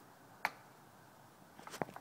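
A single sharp click about half a second in, then a few quieter clicks and knocks near the end, over faint background.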